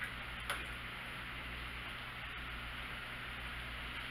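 Room tone: a steady low hum under an even hiss, broken by two short sharp clicks near the start, the stronger about half a second in.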